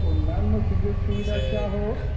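Men talking, with a low traffic rumble that fades in the first half-second and a short, high toot of a distant vehicle horn a little over a second in.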